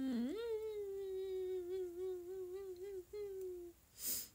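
A young woman humming: one long, fairly level tune that wavers slightly in pitch, with a brief break about three seconds in, stopping shortly before the end.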